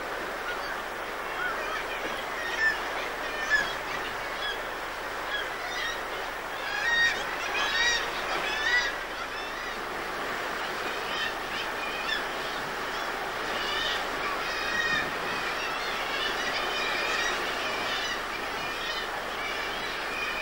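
A seabird colony on a sea cliff, mostly kittiwakes, calling over and over against a steady wash of surf. The calls grow busier and louder about a third of the way in and again around three quarters of the way through.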